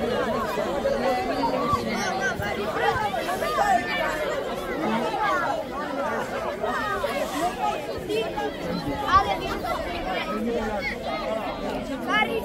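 Crowd chatter from a group of children and adults, many voices talking and calling out at once and overlapping, with no single voice standing out.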